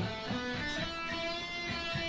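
Electric guitar being played, its notes and chords left ringing.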